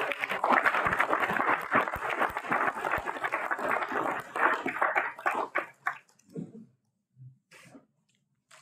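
A roomful of people applauding, dying away about six seconds in.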